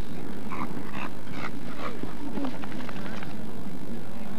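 A dog barking in a quick series, about two barks a second, fading after the first couple of seconds, over a low background murmur.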